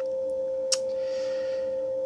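A steady mid-pitched electronic tone, like an electrical whine, with a single sharp click about three-quarters of a second in and a soft hiss just after.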